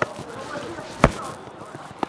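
Football being kicked between players: two sharp thuds of boot on ball, one at the start and a louder one about a second in.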